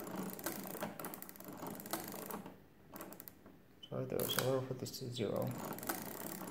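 Brass gear mechanism of a de Colmar arithmometer clicking and ratcheting as its crank handle is turned, for about two seconds. A pause follows, then a brief stretch of voice around four seconds in, and more clicking near the end.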